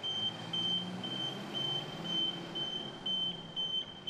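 A tow truck's electronic warning beeper sounding an even series of short high beeps, about four a second, over the low rumble of its engine.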